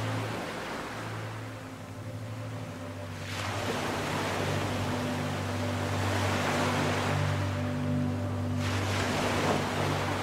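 Ambient relaxation soundtrack: the rush of waves swelling and ebbing, over low held notes of a soft musical drone.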